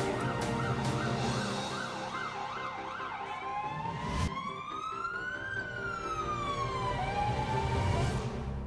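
Emergency vehicle siren over a music bed: a fast yelp for about three seconds, then a slow wail that rises and falls and starts to rise again near the end. A single thump a little past four seconds in.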